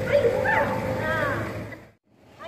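A voice with swooping, rising-and-falling pitch, fading out to silence near the end.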